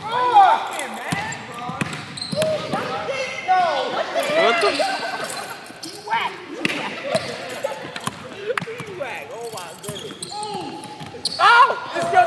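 Several people talking and calling out over one another in a large room, with a basketball bouncing now and then.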